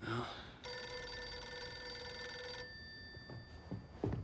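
A desk telephone's bell ringing once for about two seconds, then dying away, with a few faint knocks near the end.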